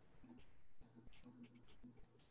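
Near silence with faint, irregular clicks, about two a second, of a computer mouse as plan sheets are paged through on screen. A faint low hum lies underneath.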